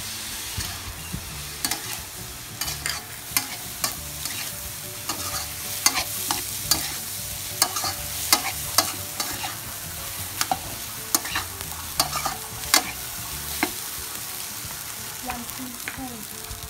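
Fried rice sizzling in a steel wok while a metal ladle stirs and tosses it, scraping and clinking sharply against the pan many times at an irregular pace.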